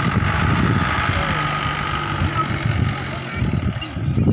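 Mahindra Bolero Pik-Up pickup truck engine running with a steady low drone, easing a little near the end.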